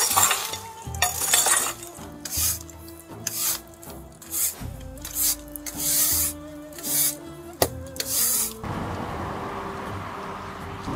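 A bristle broom sweeps ash and embers across the stone floor of a wood-fired oven, in short hissing strokes about once a second. Near the start a long metal rake scrapes through the embers. Quiet music plays underneath.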